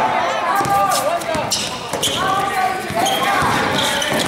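A basketball being dribbled and bounced on a hard indoor court, the thuds sounding in a large gym, while players shout over the play.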